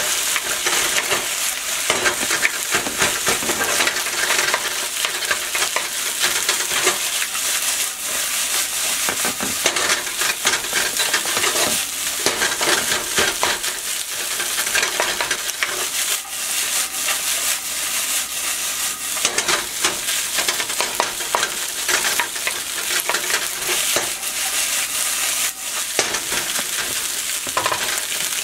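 Egg fried rice sizzling in oil in a wok while a wooden spatula stirs and turns it. There is a steady frying hiss, with the rapid scraping strokes of the spatula running through it.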